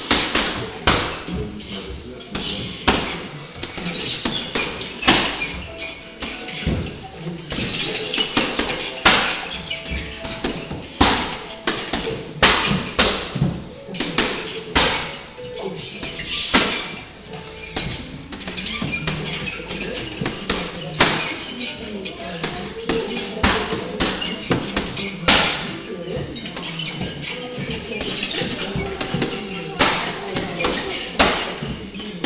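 Strikes landing on a long hanging heavy bag: sharp slaps at irregular intervals, some coming in quick pairs.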